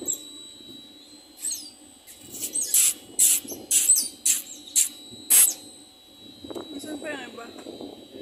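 Otters calling in the water: a run of about seven short, sharp, high-pitched squeaks over about three seconds.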